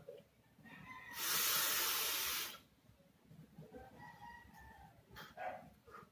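A drag on a bottom-airflow Il Capo rebuildable dripping atomizer with a very low-resistance coil, fired by a single-battery mechanical tube mod. It is heard as a loud, steady hiss of air and vapour about a second and a half long, starting about a second in.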